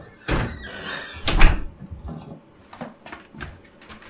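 A door being shut: a thump just after the start, then a louder bang about a second and a half in, followed by a few lighter knocks.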